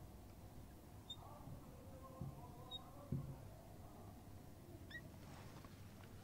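Faint squeaking of a marker writing on a whiteboard, with a couple of soft taps as the strokes are made.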